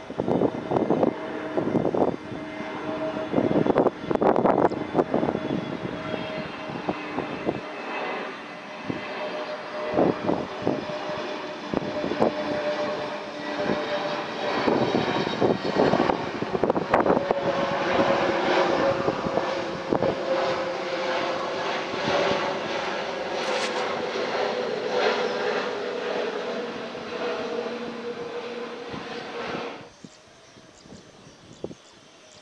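Airbus A320neo airliner with CFM LEAP-1A turbofans, descending on approach with gear down and passing low overhead: a continuous jet roar carrying steady engine tones that slowly fall in pitch as it goes over. It is loudest past the middle.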